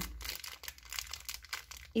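Thin clear plastic bag crinkling and crackling in the fingers as it is handled and opened, in a string of small irregular crackles.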